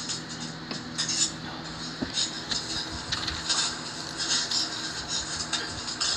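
Soundtrack of a TV drama clip played back: a low, sustained music score with short, irregular rustling hisses over it.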